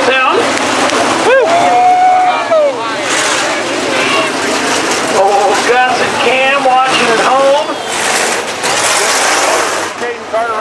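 Dirt-track modified race cars running slowly past under caution, their engines making a steady noisy drone that grows louder near the end as cars pass close. People talking over it.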